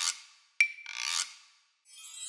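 Logo-animation sound effects: a swish fades out, then a sharp click with a brief ringing tone about half a second in, followed by another scratchy swish. A shimmering, chiming jingle begins near the end.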